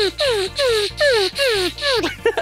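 Four evenly spaced falling tones, about two a second, with a hiss over each, laid over background music with a steady bass line.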